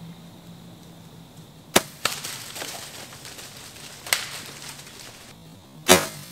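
Bow shot at a doe: sharp snaps, the loudest about two seconds in and another just before the end, with a rustling hiss after the first.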